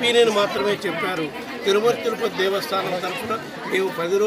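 A man speaking, with other voices chattering around him.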